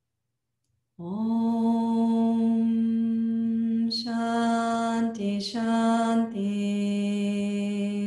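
A woman's voice chanting a mantra in long, held notes, starting about a second in, with two short breaks for consonants midway and the pitch settling slightly lower for the final long note.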